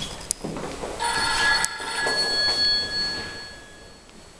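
A bell-like ringing made of several steady pitches, starting suddenly about a second in and fading away over the next couple of seconds, after a few sharp clicks.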